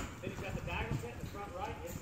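Hoofbeats of a horse moving across an arena's soft dirt footing, under people's voices talking. A sharp knock comes at the start and another near the end.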